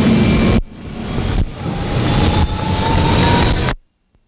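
Jet aircraft engines running loud and steady, with a whine that slowly rises in pitch in the second half. The noise drops out abruptly shortly after the start, builds back up, and cuts off sharply just before the end.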